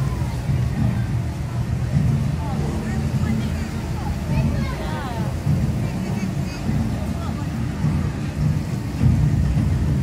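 Low, steady rumble of the Kong ride's disc rolling along its half-pipe track as the ride winds down, with faint voices of riders twice.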